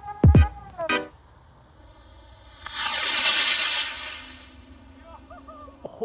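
Electronic music with falling bass sweeps, then, about two and a half seconds in, a loud hissing rush lasting about a second and a half as a homemade sugar rocket with a copper-fitting nozzle fires and lifts off, fading as it climbs away.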